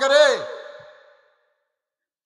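A man's voice draws out a last word, falling in pitch and fading away within about a second, then dead silence.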